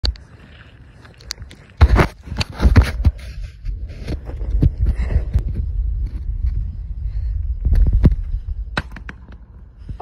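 A series of sharp cracks and knocks, several close together about two seconds in and a few more scattered later, over a low rumble.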